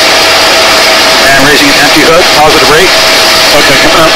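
Hovering helicopter, its steady rotor and engine noise dense and loud over the crew's intercom, with a steady mid-pitched whine running through it. A muffled voice on the intercom comes in about a second in.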